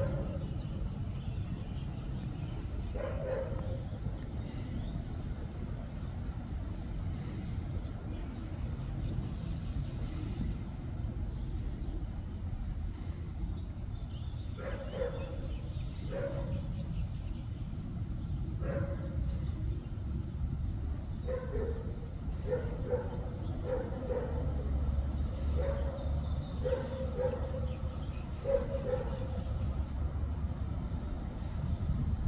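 A dog barking in short single barks, one or two early on and then more often from about halfway through, over a steady low rumble.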